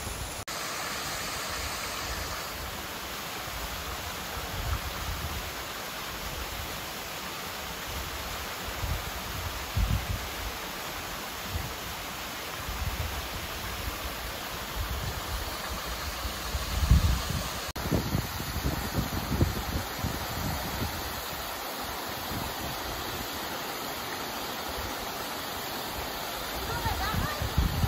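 Rainbow Falls, a thin mountain waterfall, spilling onto rock and into a pool: a steady, even rushing hiss. Irregular low rumbles come through it now and then, the strongest about seventeen seconds in.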